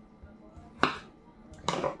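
A single sharp click about a second in, then a short noisy rustle-like burst near the end, over a quiet room.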